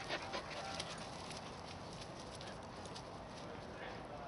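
Puppies playing on grass: faint scuffling and a brief soft whine in the first second, over a quiet, steady outdoor background.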